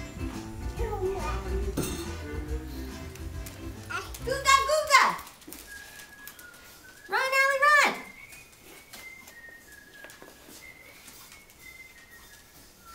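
Background music with a bass line plays for the first few seconds. Then a toddler squeals twice, each a loud, long, high cry that arches and slides down in pitch at its end. Faint thin high tones follow.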